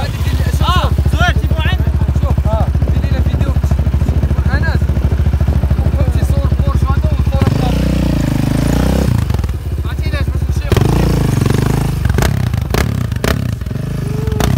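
Yamaha Raptor 700R quad's single-cylinder engine running at a steady idle, then twice rising and falling in pitch, about eight and eleven seconds in, with a few sharp clicks near the end.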